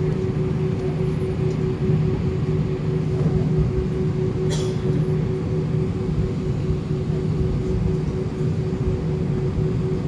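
Steady cabin drone of an airliner taxiing to the gate with its jet engines idling, heard from inside the cabin: a low hum and a higher steady hum over a rushing noise. A brief hiss about four and a half seconds in.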